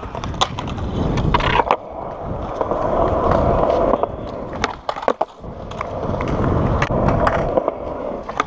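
Skateboard wheels rolling over a concrete skatepark surface, swelling and fading as the board picks up and loses speed. Sharp clacks from the board sound through it, most clustered about five seconds in.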